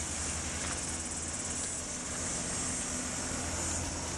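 Insects chirring outdoors: a steady, high-pitched, finely pulsed buzz, with a low rumble underneath.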